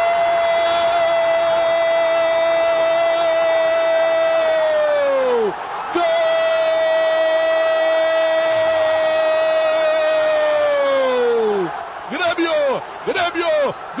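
Brazilian radio football commentator's drawn-out goal shout, 'goooool', held as one long note for about five seconds, falling away at the end, then a second long 'goooool' the same way. Rapid excited commentary resumes near the end.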